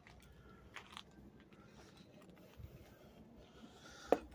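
Near silence: faint background with a couple of faint clicks about a second in.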